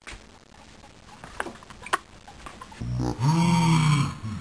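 Faint rustles and clicks, then near the end a loud, drawn-out wordless voice (a man's "oooh"-like cry) that rises and falls in pitch over a low rumble of wind or handling on the microphone.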